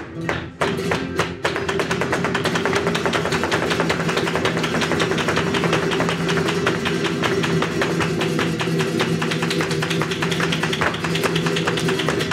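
Flamenco footwork (zapateado): a dancer's shoes striking a wooden stage, a few separate heel strikes at first and then a fast, unbroken run of strikes, over two acoustic flamenco guitars.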